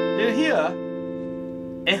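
A chord on a 1967 Gibson ES-335 electric guitar through a Fender Pro Reverb amp, ringing clean and sustained and slowly fading. A brief voice sound comes about a quarter second in, and a spoken word begins right at the end.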